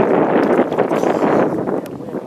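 Wind buffeting the camera microphone: a loud, steady rough rushing that eases off near the end, with a couple of faint clicks.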